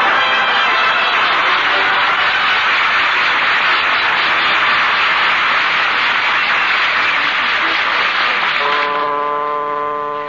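Studio audience laughter and applause on an old radio broadcast recording, dense and steady for about nine seconds. Near the end it fades while a held musical chord comes in, a scene-change bridge.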